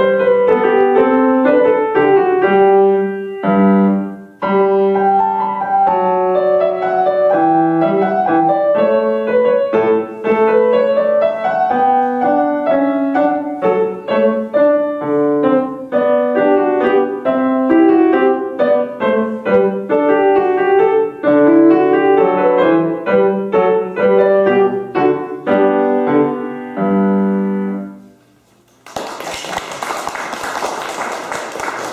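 A Yamaha grand piano is played solo, a piece with many quick notes over a low line. It ends about 27 seconds in on a held chord that fades out. A moment later applause begins.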